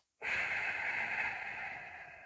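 Ujjayi breath: one long exhale through the nose with the throat slightly constricted, giving a gravelly, breathy hiss that starts a moment in and fades away toward the end.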